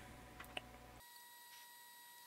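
Near silence with two faint computer keyboard keystroke clicks about half a second in, as a terminal command is typed and entered. After that comes a faint steady electronic tone.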